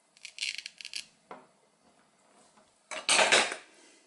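Velcro ripping in short rasps as the two halves of a wooden toy mushroom are pulled apart. About three seconds in comes a louder clatter of the wooden pieces against a wooden cutting board.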